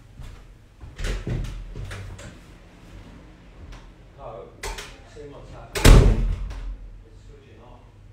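A door banging and several lighter knocks and bumps, the loudest bang about six seconds in, with faint muffled voices in the background.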